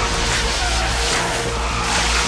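High-pressure water jet from a fire hose spraying hard, a loud continuous hissing rush, with low droning music underneath.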